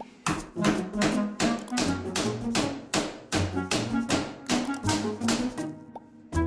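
Background music with a melody and bass, over a run of sharp taps about two to three a second: a hammer striking a putty knife wedged under a metal shower-door track on a bathtub's edge to pry it loose.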